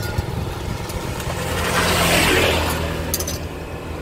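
A motorbike passing along the road: its engine and tyre noise swells about two seconds in and then fades, over a steady low engine hum.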